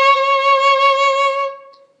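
Violin playing one long bowed C sharp, second finger on the A string, with a slight vibrato. The note fades away near the end.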